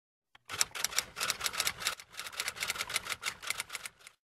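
Typewriter keys clattering in a fast, uneven run of sharp strokes, with a brief pause about halfway through, used as a typing sound effect.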